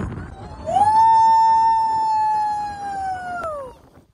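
A person's long, high yell held for about three seconds, sliding down in pitch as it ends: a scream during a jump off a cliff-top diving board into the sea.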